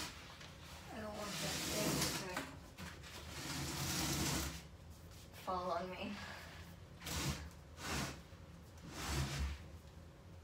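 Rubber-gloved hands scrubbing and wiping a hard surface in several separate scratchy strokes, each under about a second, with short gaps between them.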